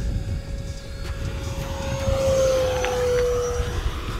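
Electric ducted-fan whine from an Arrows F-86 Sabre RC jet passing overhead: one steady high tone that grows louder about halfway through, then drops slightly in pitch as the jet goes by. Wind rumbles on the microphone underneath.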